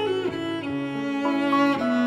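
Instrumental passage of a slow ballad: a melody of long held notes over sustained lower notes, stepping to a new pitch about every half second.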